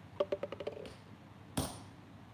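Blacksmith's hammer on an anvil while forging an axe: a quick run of light, ringing taps in the first second, then one heavy blow near the end.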